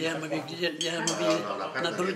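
An elderly man speaking, with light clinking of dishes and cutlery behind his voice.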